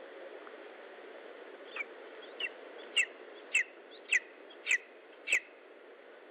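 Lesser spotted eagle calling: a series of seven sharp, downward-slurred yelps a little over half a second apart, starting nearly two seconds in and growing louder, over a steady low hiss.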